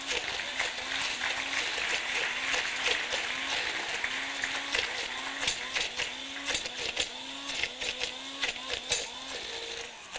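Electric hand blender running in a plastic jug, blending pesto. A low hum rises and falls in a steady rhythm under a continuous whir, with scattered clicks.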